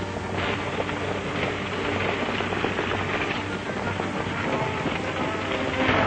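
Orchestral chase music from an old film soundtrack over a dense clatter of galloping hooves from a horse-drawn buggy's team, with a steady low hum under it all.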